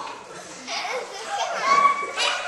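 Young people's voices talking and calling out, with one voice rising to a held high note near the end.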